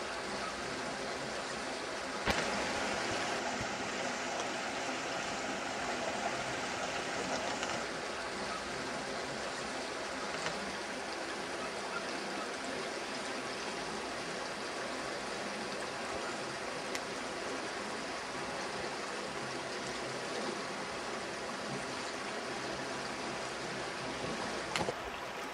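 Shallow, rocky river running over stones in small rapids: a steady, even rush of flowing water.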